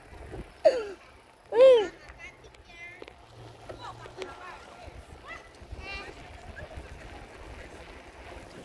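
Short voiced calls, the loudest a rising-and-falling one about a second and a half in, followed by fainter scattered voices, over a low rumble of wind and rolling noise from riding a bicycle.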